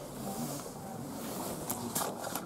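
Low rustling and handling noise as a handheld camera is moved around an open car door, with two light clicks near the end.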